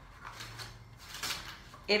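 Cardboard dividers and tape rustling and scraping against a metal tin pan as they are pressed into place by hand: a few soft, separate handling noises.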